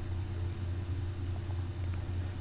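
Steady low electrical hum with a faint hiss: the background noise of the recording, with no other sound.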